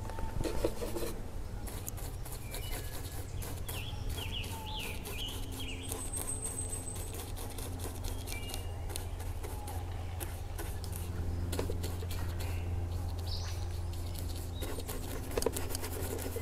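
Woodland ambience: birds chirping and whistling now and then over a steady low hum, with light scratchy ticks of an oil-paint brush working on a small panel.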